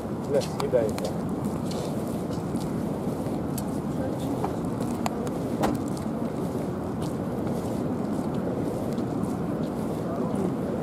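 Steady outdoor background noise with indistinct voices too faint for words, a few short voice-like sounds in the first second.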